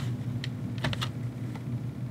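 A few light, sharp clicks and taps from hands handling a utility knife and sheet material, bunched in the first second, over a steady low hum.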